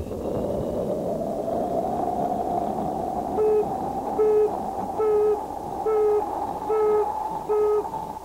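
Rocket launch sound: a steady rushing roar with a tone that slowly rises in pitch. From about three and a half seconds in, short electronic beeps repeat about every 0.8 seconds over the roar.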